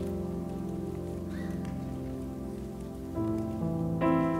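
Soft background keyboard music of slow held chords, moving to a new chord about three seconds in.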